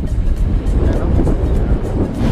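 Rush of wind and motorcycle noise from a moving motorcycle, with background music coming in under it.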